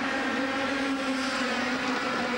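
A pack of 100cc two-stroke racing kart engines at full throttle as the field pulls away from the start: a steady drone of many engines together, the pitch wavering slightly.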